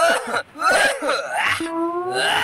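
A man clearing his throat with short coughing sounds, then a long drawn-out vocal note rising slightly in pitch near the end.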